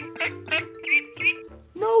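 Domestic duckling peeping: a quick run of short, high, upward-hooked calls, over soft background music with held notes.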